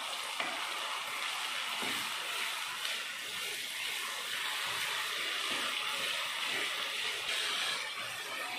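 Chopped onions, ginger-garlic paste, green chillies and curry leaves sizzling steadily in hot oil in a pan while being stirred with a wooden spatula.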